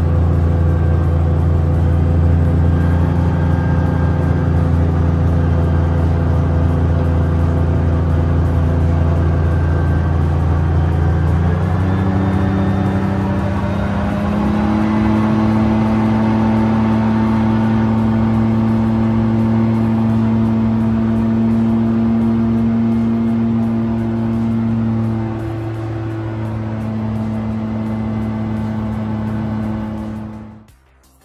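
Light aircraft's engine and propeller droning steadily as heard inside the cockpit in flight. The drone shifts to a higher pitch about twelve seconds in and gets a little quieter near the end.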